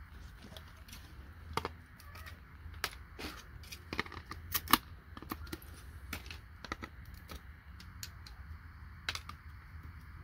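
Irregular clicks and snaps of IC chips being pried off a circuit board with a hand tool and dropping into a plastic tub, the loudest snap about halfway, over a low steady rumble.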